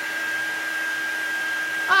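Craft heat tool running steadily, its fan blowing air with a constant hum, drying stamped ink on a card.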